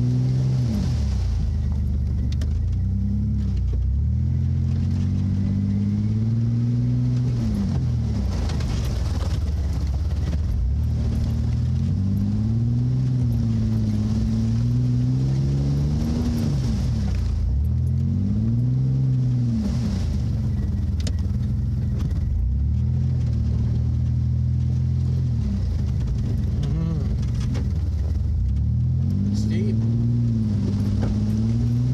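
An off-road 4x4's engine pulling slowly through icy water, its revs rising and falling several times as the driver works the throttle.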